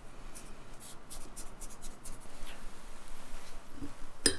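Fingers pressing buttery crushed biscuit and walnut crumbs down into a cheesecake base inside a steel cake ring: a quick run of small crackles and scratches in the first two seconds or so, then a soft knock near the end.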